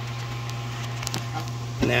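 A steady low hum, like a fan or motor running in the background, with a couple of faint clicks about a second in. A man's voice begins near the end.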